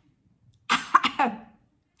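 A woman's short laugh with a cough, her reaction to the sting of a breath spray she has just sprayed into her mouth. It comes once, about two-thirds of a second in, and lasts under a second.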